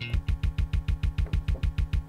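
Music played through a Denon DJ SC5000 Prime media player in loop roll mode: a short slice of the beat repeats in a rapid, even stutter of about eight repeats a second, a quarter-beat roll.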